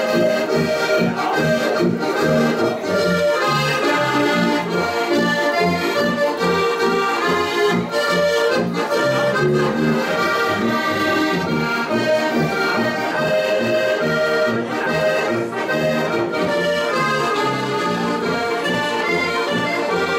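Several diatonic button accordions (Styrian harmonicas) and a tuba playing an Alpine folk tune together, the tuba giving low bass notes in an even beat under the accordion chords.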